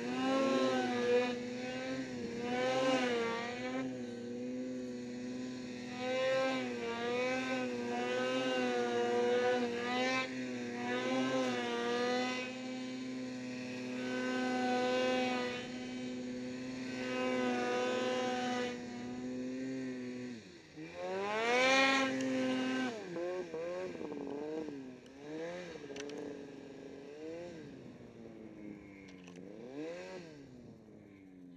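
Snowmobile engine running under load through deep powder, its pitch mostly steady with small rises and falls. About twenty seconds in it drops briefly, revs up sharply, then eases off to a lower, varying run near the end.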